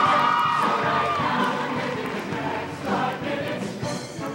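Show choir singing with musical accompaniment, a long held chord ending about a second in before the singing moves on.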